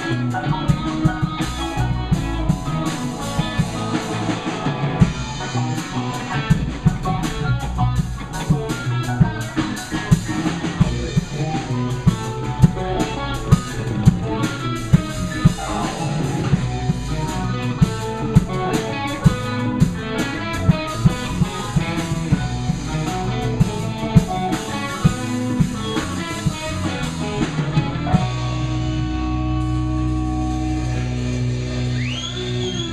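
Live rock band playing: electric guitars over keyboards and a drum kit, with regular drum hits. Near the end the drums stop and a held chord rings.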